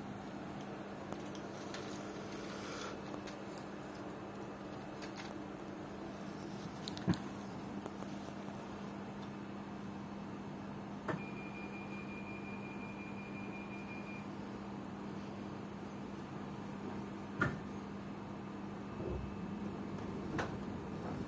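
Steady low hum inside a passenger train carriage standing at a station, with a few faint knocks. Partway through, a high thin electronic tone sounds for about three seconds.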